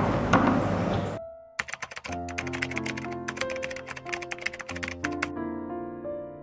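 Rapid keyboard typing clicks for about four seconds over soft piano music, which carries on alone near the end. The noisy café room sound cuts off about a second in.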